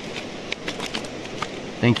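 Steady rush of running creek water, with scattered light clicks through it. A man's voice comes in near the end.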